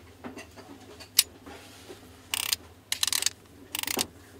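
Handling noise from a manual-focus Nikon lens turned in gloved hands. There is a sharp click about a second in, then three short bursts of rapid ticking and rasping, which sound like the lens's rings and metal mount being worked.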